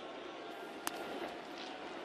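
Steady ballpark crowd murmur, with a single sharp crack of a bat hitting the ball just under a second in, putting a ground ball in play.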